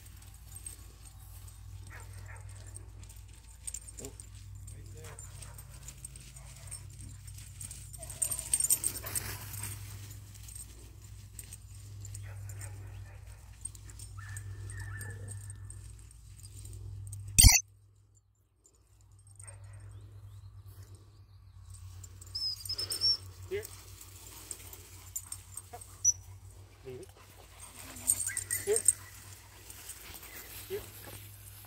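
Outdoor sounds of a puppy and people moving through tall grass, with scattered faint clicks and short chirps. A single sharp knock comes a little past halfway, followed by about a second of near silence.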